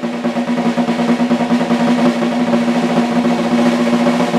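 Snare drum on an acoustic drum kit played in a fast, continuous roll with both sticks, growing louder in the first second and staying loud.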